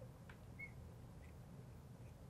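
Near silence with a low room hum and a few faint short squeaks and a tick from a marker writing on a glass lightboard.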